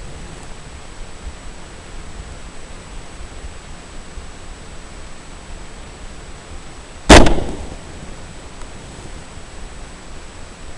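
A single suppressed rifle shot about seven seconds in: one sharp report with a short fading tail, over a steady hiss.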